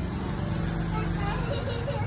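A steady low engine hum with faint voices over it.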